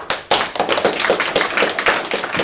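Audience applauding: many hands clapping at once in a dense, steady stream, louder than the talk before it.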